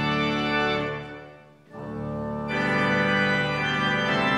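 Organ playing held chords. One chord dies away about a second in, and after a brief gap a new chord begins and swells fuller.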